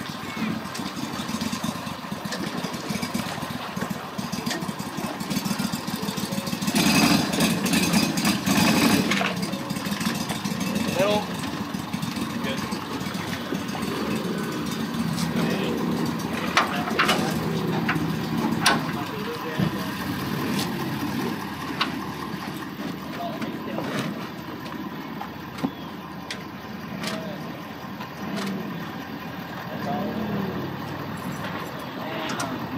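Small tiller outboard motor on a flat-bottom boat running at low speed while the boat is driven onto its trailer. It gets louder for about two seconds around seven seconds in.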